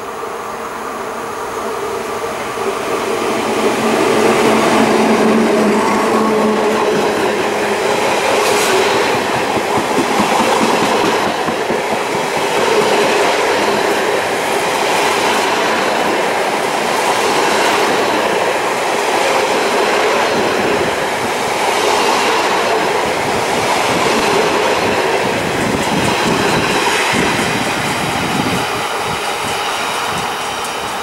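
SNCF BB 67400-class diesel locomotive BB 67590 growing louder as it passes, its engine drone strongest a few seconds in. A long train of withdrawn stainless-steel RIO coaches then rolls by with a steady rumble and regular wheel clacks over the rail joints.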